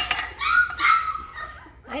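Young Great Bernese puppies crying with high-pitched whines and yips in the first second or so, then tailing off; hungry pups waiting for their mother to nurse them.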